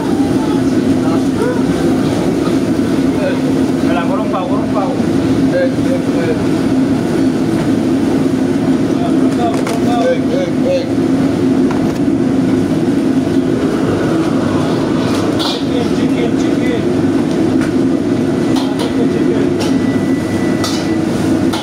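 Commercial gas wok range and its extraction hood running with a steady, loud rush of burner flame and fan noise. A few sharp metal clinks come in the second half.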